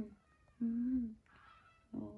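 A woman's soft, sustained cooing note, sung to lull a baby macaque to sleep, held for about half a second in the middle. Around it come faint, thin, high squeaks from the baby monkey.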